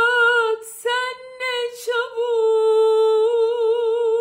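A woman's solo voice singing a wordless melody with no accompaniment: a few short phrases, then a long held note with vibrato through the second half.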